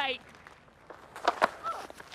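A few short thuds of a bowler's footsteps running in and landing in the delivery stride on a cricket pitch, about a second in.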